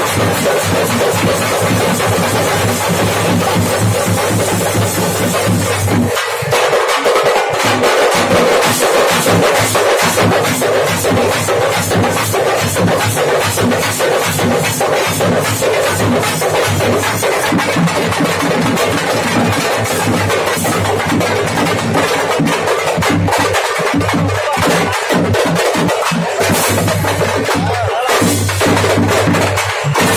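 A troupe of double-headed barrel drums beaten with sticks, with hand cymbals, playing a loud, fast, unbroken rhythm.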